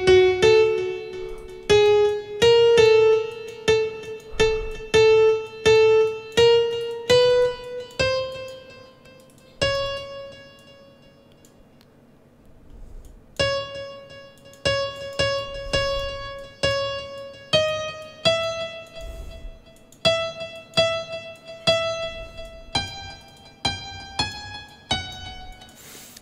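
Software grand piano (FL Studio's FL Keys) sounding single notes one at a time at an uneven pace, each struck and left to ring, the pitch stepping upward in stages with a pause about halfway. It fits notes previewing as they are clicked into the piano roll.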